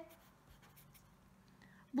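Felt-tip marker writing on paper, faint short strokes as the words are written out.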